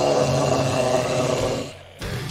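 A long held harsh metal vocal, a rasping scream, that fades out just before the end.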